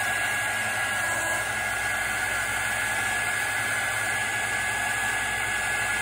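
Handheld craft heat tool running steadily, its fan blowing hot air in an even rush with a thin steady high whine, as it dries wet ink on watercolor paper.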